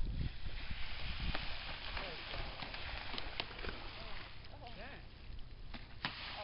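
Water splashing and hissing as snook strike baitfish at the surface, with a few sharp splash sounds in the middle. Low wind rumble on the microphone near the start.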